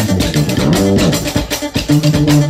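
Live band music: electric guitar lines and bass guitar over a steady beat.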